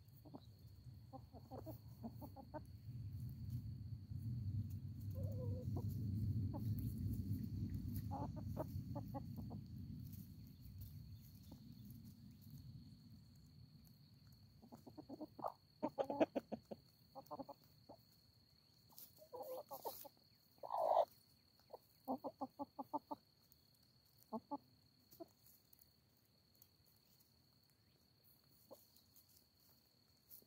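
Hens clucking in quick runs of short calls, busiest in the second half. A low rumble swells and fades over the first half, and a faint steady high tone runs underneath.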